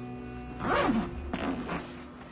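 A suitcase zipper pulled in two rasping strokes, the first a little before halfway and the second near the end, over a sustained background music chord that fades out.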